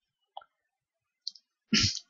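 Two faint, short clicks in an otherwise near-silent pause, then a man's voice begins near the end.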